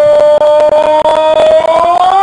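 A commentator's long, drawn-out goal shout: one loud note held steady that rises slightly at the end.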